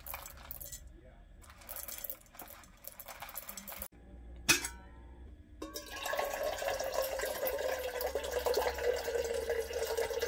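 Whole coffee beans poured from a bag into a stainless steel canister, rattling irregularly. After a sharp click about halfway through, water runs from the spigot of a Berkey gravity water filter into a stainless steel kettle, with a steady ringing tone that slowly falls in pitch as it fills.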